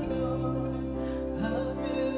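Live worship band playing a slow song with held chords on keyboard, electric guitar and bass, and a woman singing.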